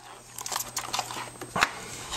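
Light handling clicks and faint scraping from work on a small plastic camera and its freshly applied epoxy putty, with one sharper click near the end.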